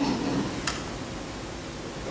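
Steady hiss of room and recording noise, with a faint low murmur in the first half second and a single sharp click about two-thirds of a second in.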